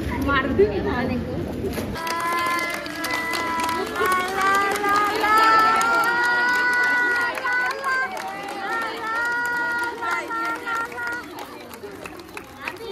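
A tinny electronic melody of steady held notes starting about two seconds in and stopping near the end, over a group clapping along and voices.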